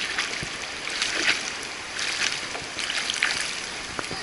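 Water splashing from a child kicking at the surface of a swimming pool: a steady wash of moving water broken by irregular splashes about once a second.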